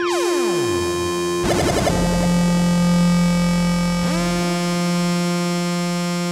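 Beatless breakdown in a melodic techno track: layered synthesizer tones sweep down in pitch at the start, settle into a held low chord, then slide up into another sustained chord about four seconds in.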